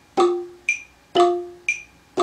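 Ranad ek, the Thai wooden xylophone, struck with mallets in a slow, even pattern: lower and higher notes alternate, about two strokes a second, each note ringing briefly and fading before the next.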